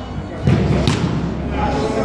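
A soccer ball struck with a heavy thud about half a second in, then a sharp smack a moment later, as a shot comes in at the goalkeeper.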